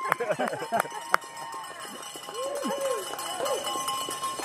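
Several people laughing and whooping in short bursts, with two sharp clicks about a second in.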